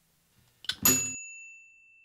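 A toaster popping up: a short click, then a sharp clack with a bright bell-like ding that rings on and fades over about two seconds.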